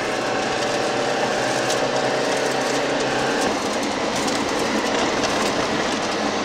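Suzuki Samurai's four-cylinder engine running while the small 4x4 rattles and shakes over a washboard dirt road, heard from inside the cab, with steady road noise and scattered sharp clicks. The engine note shifts about three and a half seconds in.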